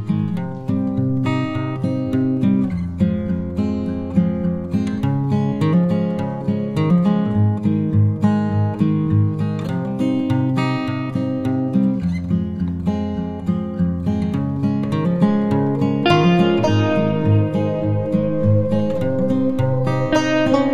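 Background music played on plucked acoustic guitar: a steady run of picked notes over held low notes.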